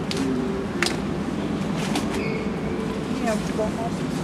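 Store ambience in a large hardware store: a steady background hum with faint distant voices, a few sharp light clicks, and a faint short beep a little over two seconds in.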